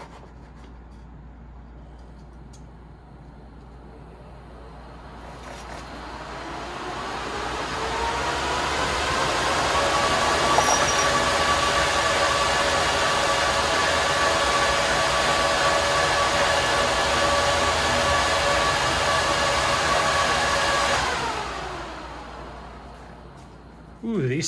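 A bank of six PC cooling fans switched on together: a whine and rush of air that rises in pitch as they spin up over about five seconds, then runs steady and loud for about ten seconds before winding down near the end.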